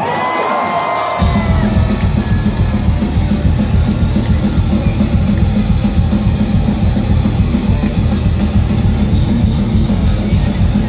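Finnish heavy metal band playing live, heard from within the audience: after a held note, drums and bass come in about a second in and the full band plays on at a steady, fast pulse.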